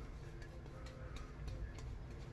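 A Turn N Shave V4 tip badger shaving brush worked over lathered neck stubble makes faint, irregular little ticks and scratches.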